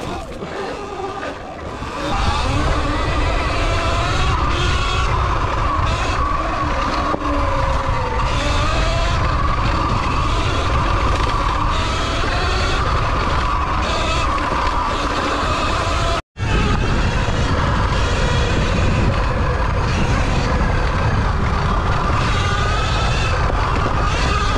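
Sur Ron electric dirt bike riding: wind buffeting the microphone, loud from about two seconds in, under the motor's whine that drifts up and down in pitch with speed. The sound cuts out for an instant about two-thirds of the way through.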